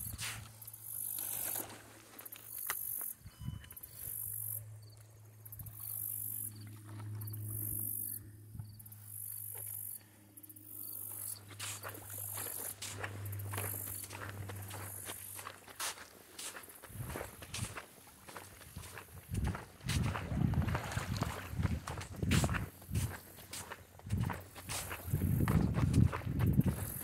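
Footsteps on sand at a steady walking pace, about three steps every two seconds, over a low steady hum for the first ten seconds or so. The steps then stop and irregular low thumps and rustling take over, loudest near the end.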